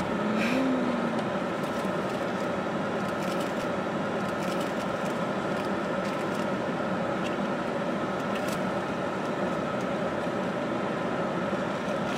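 Steady, even hum inside a car cabin with the engine running.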